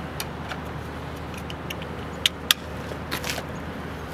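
A few sharp clicks and light rattles as hands work the latches and frame of a portable wheelchair and scooter lifting platform and the folded mobility device on it, the loudest two clicks close together past the middle. A steady low hum sits underneath.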